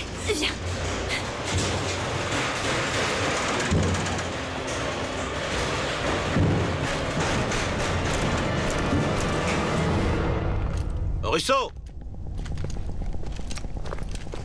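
Film soundtrack of dramatic score and low booming effects, dense and steady for about ten seconds, then cutting off suddenly. A short wavering sound and a low hum follow near the end.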